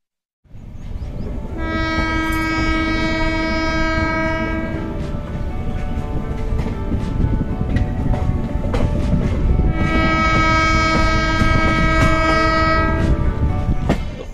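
Passenger train running with a steady low rumble of wheels and coaches, its horn sounding two long blasts of about three seconds each, one shortly after the start and one near the end.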